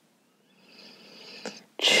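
A woman's faint breathy intake of breath, a small mouth click, then near the end the loud, breathy start of her spoken word.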